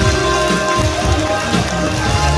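Instrumental karaoke backing track of a Korean trot song playing through a hall's PA speakers, sustained chords over a moving bass line, with no voice singing.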